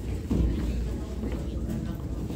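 Indistinct voices talking in the room, with a low steady hum underneath.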